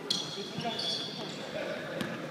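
Basketball game on a hardwood gym floor: the ball bouncing and sneakers squeaking as players run, with distant voices, all echoing in the large hall. A cluster of high squeaks comes in the first second.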